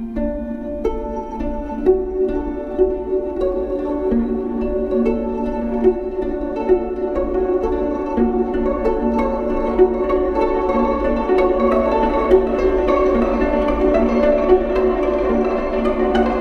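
Viola played with the bow, its sustained notes layered with live electronics into a dense texture of overlapping held tones, dotted with short clicks throughout.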